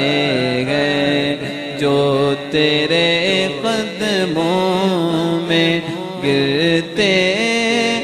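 A male naat reciter singing into a microphone, drawing out the word 'sambhal jaate' in one long, wavering, ornamented melodic run.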